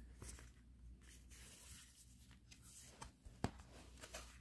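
Faint rustling and light clicks of a cardboard fold-out CD sleeve being handled and opened, with one sharp click near the end.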